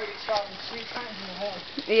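Brief, faint spoken fragments over a steady crackly background noise, with a voice saying "yep" near the end.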